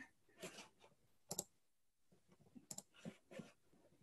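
Faint, scattered computer clicks, several in quick pairs like mouse double-clicks.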